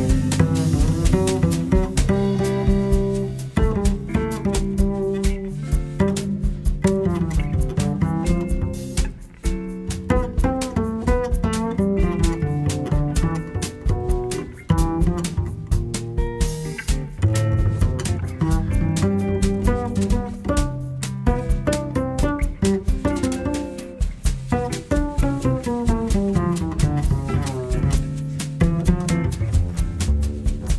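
Instrumental jazz passage with no singing: a double bass carries the low line under other pitched instruments, with frequent sharp percussive strikes throughout.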